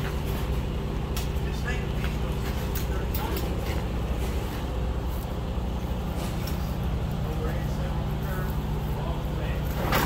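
Truck engine idling steadily with a low hum, with scattered light clicks and a sharp, loud clank near the end.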